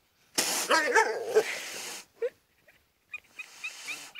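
A domestic cat hissing, with a bending yowl in the hiss, lasting over a second from about half a second in. Near the end come a few short high cries.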